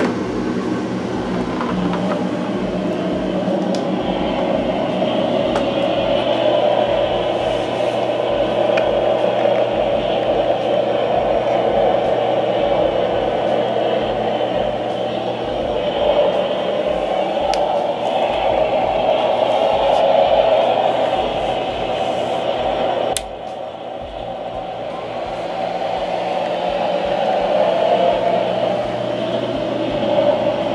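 A steady whooshing noise over a low hum, which drops suddenly about three-quarters of the way through and then slowly builds again.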